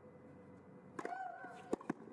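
Tennis serve: the racket strikes the ball about a second in, together with the server's pitched shriek lasting well under a second, followed near the end by two sharp ball impacts in quick succession as the ball bounces and is returned.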